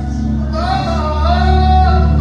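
Live gospel worship music: a man sings into a microphone over the band's sustained low notes, his voice coming in about half a second in with two short, wavering phrases.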